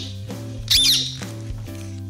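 A parrot screech sound effect: one harsh, high, swooping call about three quarters of a second in, over steady background music.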